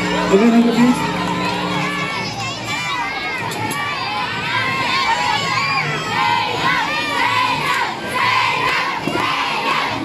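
Concert crowd cheering and shouting, many high-pitched voices overlapping. A held note from the band's instruments rings under the cheering and stops about two seconds in.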